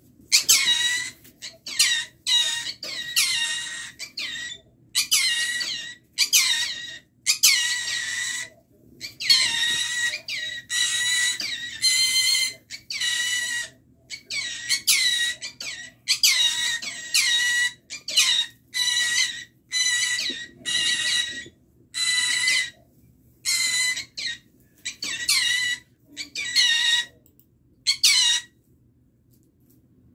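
Green-cheeked conure screeching: loud, harsh calls repeated about once or twice a second, stopping shortly before the end.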